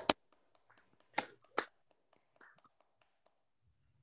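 Two sharp hand claps a little over a second in, about half a second apart.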